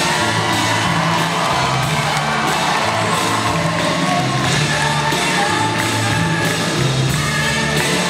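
Large orchestra with strings, choir and a rock rhythm section playing a pop-rock arrangement, voices and strings over a steady repeating bass line.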